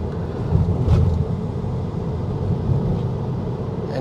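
Tyre and road noise heard from inside the cabin of a Tesla Model 3 travelling at about 65 km/h: a steady low rumble.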